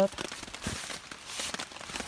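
Light rain pattering steadily, with scattered soft clicks and rustles.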